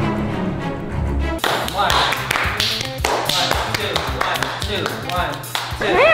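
A short stretch of music with a deep bass, then from about a second and a half in a run of quick hand slaps over faint sing-song voices: a hand-clapping game.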